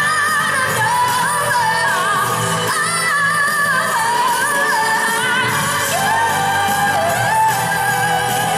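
A woman singing a pop song live into a handheld microphone over an amplified backing track, her voice moving in quick, wavering runs, then settling into a long held note about six seconds in.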